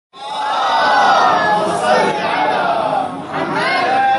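A group of men's voices chanting together, loud and sustained, starting at once as the recording begins.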